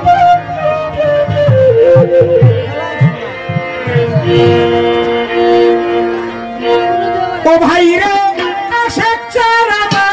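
Violin playing the melody of a Bangla baul folk song over its band's accompaniment, an instrumental passage without singing; in the last few seconds the notes waver more strongly.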